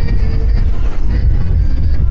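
Wind buffeting the microphone, a heavy, steady low rumble, with faint music audible behind it.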